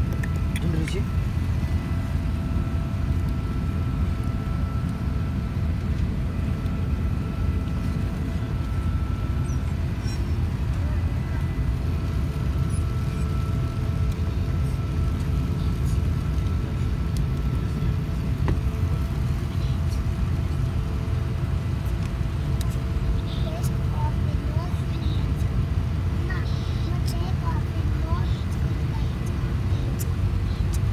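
Steady low rumble inside an airliner cabin with the engines running on the ground, the level even throughout, with a faint steady whine over it. Faint voices of other passengers are in the background.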